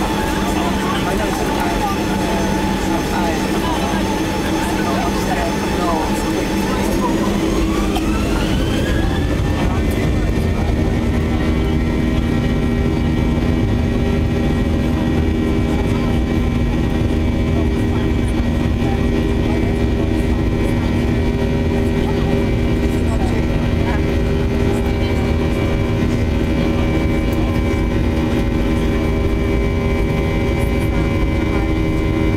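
Boeing 737-800's CFM56-7B turbofan engines heard from inside the cabin, spooling up for take-off. Between about seven and ten seconds in, the engine whine rises in pitch and a deeper rumble grows. The engines then hold a steady whine and rumble at take-off thrust.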